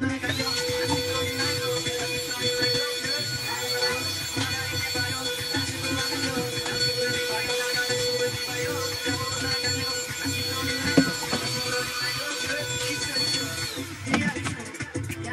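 Handheld vacuum cleaner switched on, its motor winding up to a steady high whine with a lower hum, running steadily, then switched off just before the end, the whine falling away. One sharp knock late on, the loudest moment.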